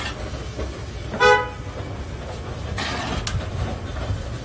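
A single short vehicle-horn toot about a second in, over a steady low rumble.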